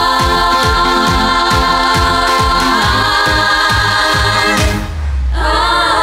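Several female voices singing long held harmonies over a pop backing track with a steady kick-drum beat. Near the end the music drops out briefly under a deep bass swell, then the voices come back in.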